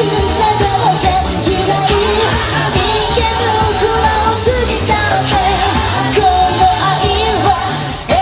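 Live J-pop song: a female idol group singing into microphones over loud band music with a steady beat.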